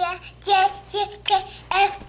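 A toddler singing a short sing-song chant of about five syllables, each held briefly on nearly the same pitch.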